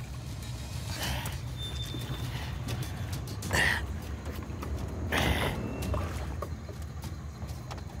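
Water splashing and sloshing around a hooked American alligator as it is hauled up against the side of an aluminium boat, in three short surges. A low steady rumble runs underneath.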